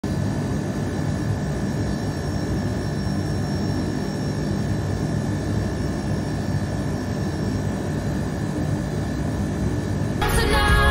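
Water-circulation pump of a plunge tub running steadily, a low rumble with a faint high whine over it, the water stirring at the surface.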